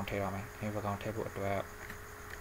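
A low, buzzy voice in several short bursts, held on a nearly steady pitch.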